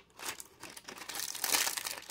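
Plastic toy packaging crinkling and crackling as an accessory is worked out of it, growing to its loudest about a second and a half in.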